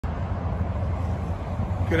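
A steady low rumble with a light hiss over it. A man starts speaking right at the end.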